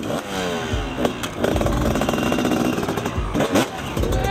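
Two-stroke freestyle motocross bike engine revving in repeated blips, its pitch rising and falling, with a few heavy low thumps mixed in.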